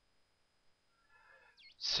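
Near silence: faint recording hiss with a thin steady high whine. A man's voice starts speaking near the end.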